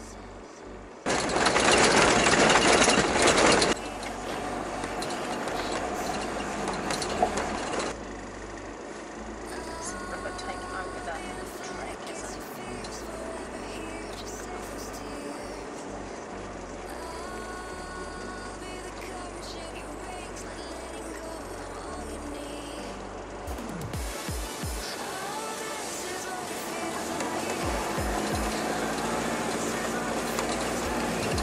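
Background music over vehicle noise, with a loud rushing noise for a few seconds near the start.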